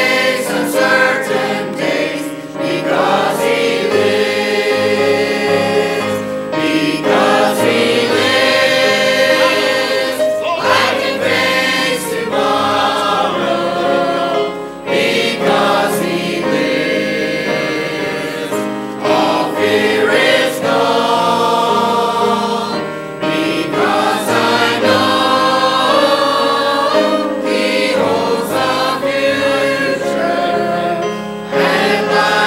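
Mixed church choir of men and women singing a gospel song, continuously and at full voice.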